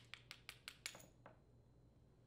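Light, rapid metal clicks, about six a second, as a small flathead screwdriver works the brass main jet and main nozzle out of a small-engine carburetor body; they stop about a second in, leaving near silence.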